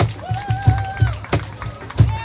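Cajon playing a steady beat: deep bass thumps about three a second with sharper slaps between them. A voice holds one long call over it early on.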